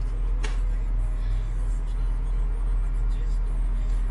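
Steady low rumble of a car's engine and tyres heard from inside the cabin while driving, with a brief click about half a second in.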